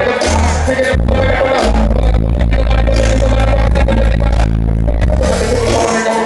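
Live hip-hop beat played loud through a club PA, with a deep bass note held through the middle and a voice rapping over it.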